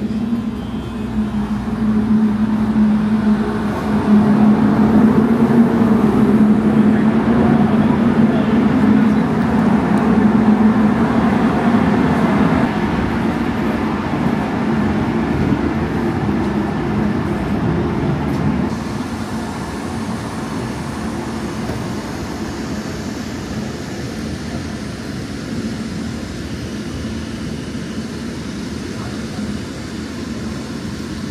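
Steady shipboard machinery and ventilation hum with a low drone, loudest in the first dozen seconds. About two-thirds of the way in it drops to a quieter, airier background noise.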